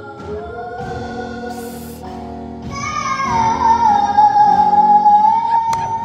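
A children's gospel quartet singing into handheld microphones over a PA. About three seconds in the singing gets louder and settles into a long held note.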